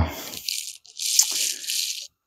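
Two stretches of rustling handling noise, each lasting about a second, from hands moving over cables and the frame of the laser engraver and the handheld camera.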